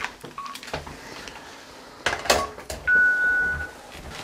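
A telephone beeping after a call is ended: a few handling clicks, then a single steady electronic beep lasting under a second about three seconds in.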